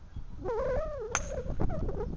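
Golf club striking a ball off the tee: one sharp crack a little over a second in, over wind noise on the microphone.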